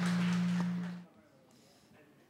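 A steady low hum from the hall's sound system. It cuts off abruptly about a second in, leaving near silence.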